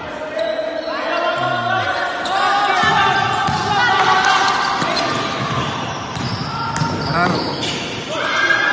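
A basketball bouncing on a hardwood gym floor during play, with players and onlookers shouting in the echoing hall.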